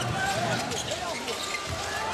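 A basketball dribbled on a hardwood court, a few bounces, over the murmur of an arena crowd.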